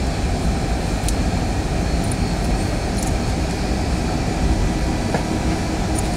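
Steady rumble of a Boeing 757-200 rolling out on the runway after landing, heard inside the cabin: its Rolls-Royce RB211 engines and the wheels on the runway blend into one even noise, with a few faint clicks.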